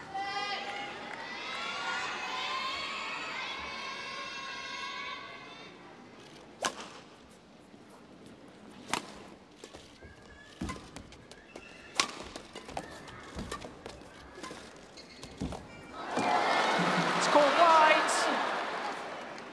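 Arena crowd calling out before the serve. Then a badminton rally: sharp racket strikes on the shuttlecock every second or two. A loud crowd outcry near the end as the rally finishes.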